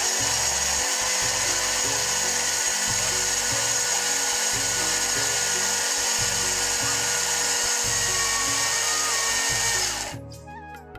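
Electric mixer grinder running steadily at high speed with a whining motor, starting abruptly and cutting off about ten seconds later. Background music with a steady beat plays underneath.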